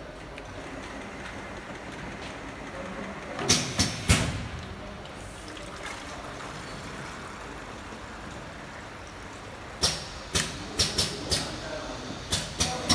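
Automatic multi-nozzle piston filling machine running with a steady mechanical hum. Sharp hisses and clunks from its pneumatic cylinders and valves come in groups: three about three and a half seconds in, and a quicker run of five or six from about ten seconds in.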